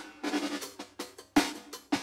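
Slapped electric bass playing a funk groove on octaves in G, thumb and pluck strokes in a thumb, pluck, thumb, thumb, pluck pattern. It follows a drum track's snare and hi-hat accents, with no kick drum, and sharp snare hits stand out at the start and about a second and a half in.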